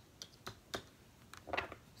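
Tarot cards being handled: a handful of light, sharp clicks and taps spread through a faint pause, with a brief faint murmur of voice near the end.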